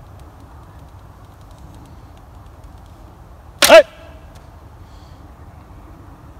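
A 55 lb mulberry-and-bamboo laminated yumi loosed once about three and a half seconds in: a short, sharp twang of the bowstring on release, ringing briefly.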